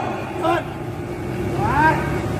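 A steady low rumble in the open air, with faint, brief voices about half a second in and again near the end.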